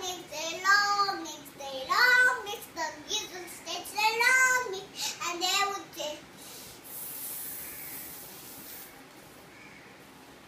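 A young girl singing a children's song unaccompanied, her phrases ending about six seconds in. A soft hiss follows for a couple of seconds, then quiet room noise.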